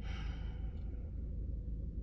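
A man sighs: one long breathy exhale that fades out over about a second, over a steady low hum inside a car's cabin.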